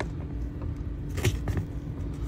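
Low handling rumble with a faint steady hum, and a few light clicks just past a second in, from hands working at a car seat back's upholstery and clips.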